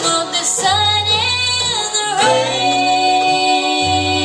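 Live bluegrass band: a young female lead vocal over acoustic guitar, mandolin and banjo. Her voice bends in pitch through a phrase in the first half, then holds a long note.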